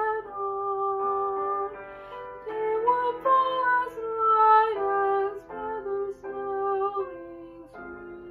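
A young woman singing a slow, gentle song solo, holding long notes with a slight waver on some of them.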